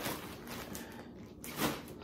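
Faint rustling and handling noise from clothes and a plastic bag, with a louder brush or knock about one and a half seconds in.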